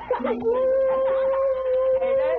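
A man's voice holding one long, steady howl, a hype holler in reaction to a rap line, after a brief laugh at the start.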